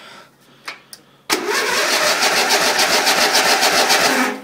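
Electric starter cranking a Briggs & Stratton 12 hp I/C lawn-tractor engine. It starts about a second in and turns over in a steady, rapid chug of about nine compression strokes a second, without the engine catching. This is a cold start on an engine unused for about six months, whose fuel the owner suspects is stale or missing.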